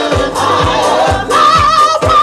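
Women singing live over house music with a steady four-on-the-floor kick drum, about two beats a second. A long, wavering sung note is held from about halfway through.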